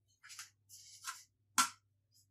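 Flour being tipped from a measuring cup into a mixing bowl, two short soft rustles, then a single sharp knock about one and a half seconds in as the emptied cup is handled.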